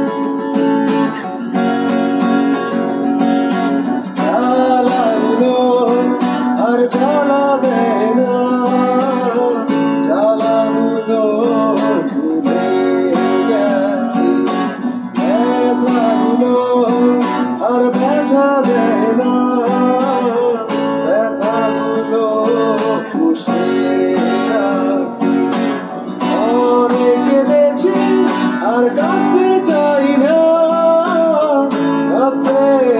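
Acoustic guitar strummed in a steady rhythm, with a man singing a melody over it from about four seconds in.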